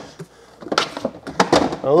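Several short knocks and clatters as containers are shifted about inside a refrigerator, about a second in, followed by a man's voice near the end.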